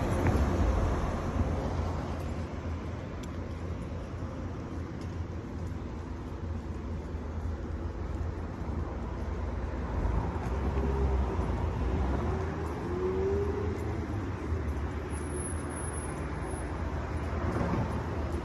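Street traffic ambience: a steady low rumble of road noise, with a faint rising tone about two-thirds of the way through.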